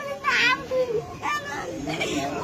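A woman wailing in grief, her crying voice rising and falling in broken phrases, with other voices of the crowd around her.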